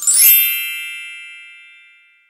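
A single chime struck once, ringing with several high tones and fading away over about two seconds. It is the read-along signal to turn the page.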